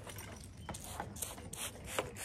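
A cloth wiping a car window: a run of quick rubbing strokes that come closer together about halfway through.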